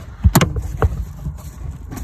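Two sharp plastic knocks about half a second apart, then low handling rumble, as a wiring connector block is pushed into the back of a rear lamp cluster.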